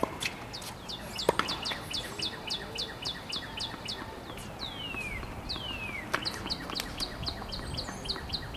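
A bird singing: a fast series of short, high, downslurred notes, about five a second, broken about midway by two longer falling whistles, then the fast series again. A few sharp knocks sound over it, about a second in and again about six seconds in.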